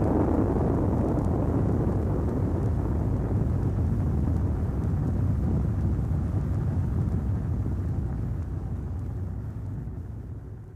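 Deep, continuous rumbling noise, a volcanic-eruption sound effect, slowly fading away over the last couple of seconds.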